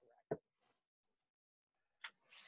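Near silence on a video call, broken by one short soft knock or click about a third of a second in.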